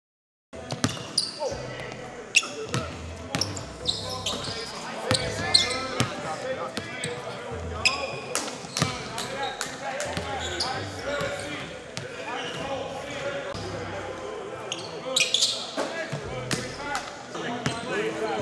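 Basketballs bouncing on a hardwood gym floor, with sharp short sneaker squeaks and indistinct voices echoing in a large hall, starting about half a second in.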